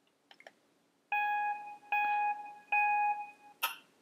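Camera self-timer on a phone: three identical beeps about 0.8 s apart, each fading away, then the shutter click as the picture is taken.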